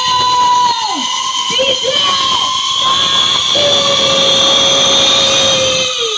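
Loud electronic DJ music over a large sound system: a long held synth-like tone that now and then drops sharply in pitch, with a hiss on top.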